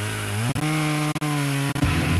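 Distorted electric guitar sounding one note that wavers, slides up about half a second in and is held, before the band's heavy riff comes in near the end.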